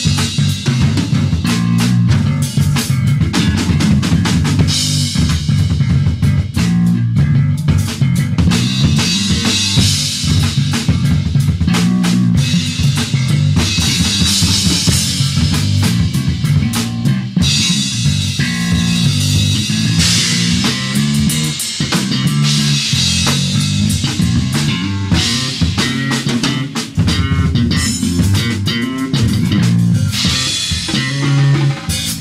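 Live drum kit and electric guitar jamming together: the drums keep up dense kick and snare hits with recurring cymbal wash over a running low guitar line.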